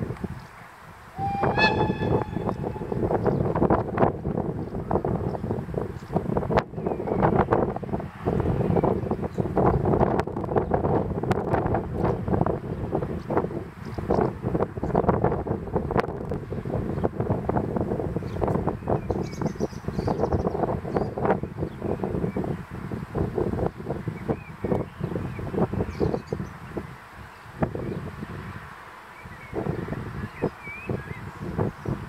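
A short horn blast from an E94 electric locomotive about two seconds in. Then the train rolls slowly over points and rail joints with irregular clatter and knocks over a steady rumble, easing off near the end.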